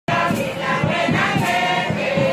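A crowd of women singing together in chorus, many voices at once at a steady level.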